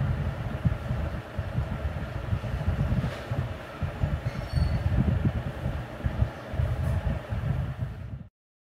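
A loud, steady low rumble of background noise, uneven in the lowest range, with a fainter hiss above it.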